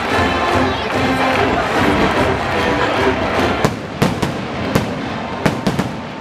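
Stadium music playing over a crowd. In the second half come about seven sharp bangs in quick succession.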